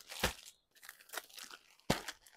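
Clear plastic saree packets crinkling as they are handled and lifted off a stack, with two sharper crackles, one about a quarter second in and one near the end, and faint rustling between.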